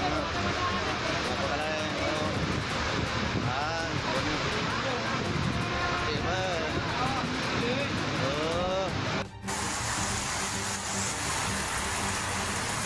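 Heavy rain and running floodwater, a steady roar of noise, with people's voices calling out in the background a few times. The sound breaks off briefly about nine seconds in and the water noise carries on.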